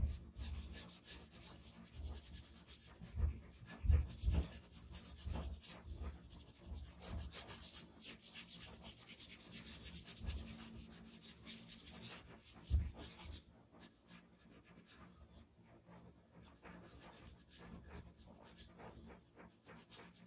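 Small brush rubbing charcoal into drawing paper in quick, short scraping strokes, with a few dull bumps about four seconds in and again near thirteen seconds; the strokes turn fainter in the last few seconds.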